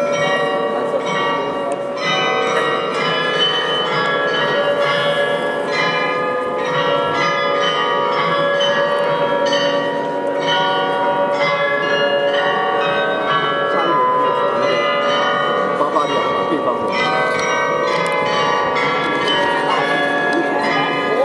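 The Glockenspiel carillon of Munich's New Town Hall playing a tune, with many tuned bells struck in quick succession, each note ringing on under the next. This is the music of the tower's hourly show, played while the mechanical figures turn.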